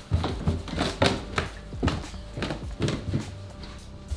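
Footsteps going down wooden stairs in socks, a quick, slightly uneven series of thuds, over background music.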